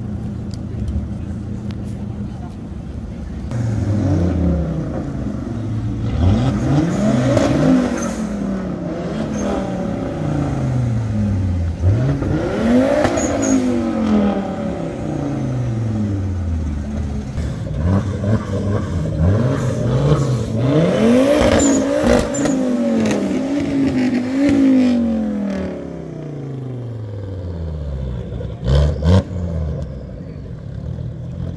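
A car engine idling, then revved again and again, each rev climbing in pitch and falling back, a dozen or so in a row, before it settles back down about five seconds before the end.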